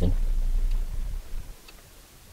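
Car engine idling and then switched off at the start/stop control, its low hum dying away about a second and a half in, with a faint click or two.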